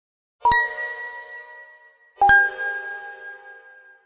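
Two-note bell-like chime: a struck tone about half a second in, then a second, lower one a little past two seconds, each ringing out and fading slowly.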